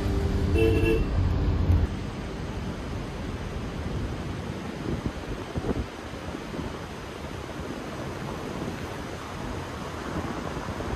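Music ends about two seconds in. After it comes the steady rumble of an electric car's tyres on a rough unpaved road, with wind noise and a few faint ticks.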